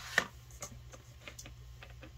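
A few light clicks and taps of small craft items being handled on a tabletop. The first click, just after the start, is the sharpest, and fainter ticks follow.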